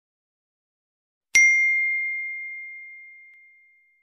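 A single bell ding sound effect about a second and a half in: one clear, high ring that fades away over about two seconds.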